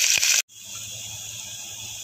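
Hot oil sizzling loudly around garlic, curry leaves and dried Kashmiri chillies frying in a tempering, with a few clicks of a steel ladle against the pot. About half a second in it cuts off abruptly, and a quieter steady hiss of the oil follows.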